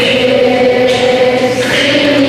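Elementary-school children's choir singing, holding one long note that shifts near the end.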